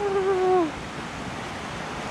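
A drawn-out voiced note from a person, held on one pitch and dropping away under a second in, then the steady rush of a shallow river flowing over stones.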